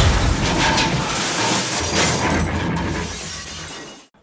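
Glass-shattering sound effect for an intro title: a crash of breaking glass dying away with a few lighter hits, over the tail of the intro music, fading out near the end.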